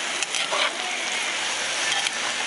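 Beef and spinach stew sizzling in the pot: a steady hiss with a few small pops in the first half-second.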